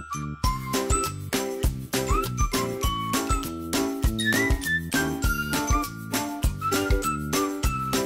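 Upbeat background music with a steady beat and a bass pulse about twice a second, carrying a whistle-like melody whose notes slide up into their pitch.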